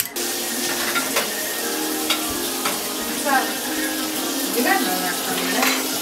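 Food frying in a hot pan: a steady sizzling hiss that starts abruptly, with a few light clicks of a utensil.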